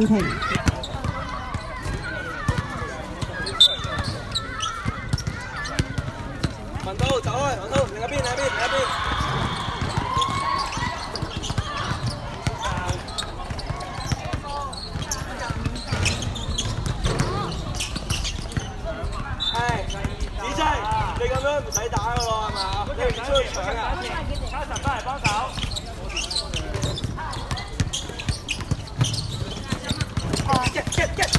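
Basketball dribbling and bouncing on an outdoor hard court: repeated short thuds throughout, mixed with players' and onlookers' voices calling out.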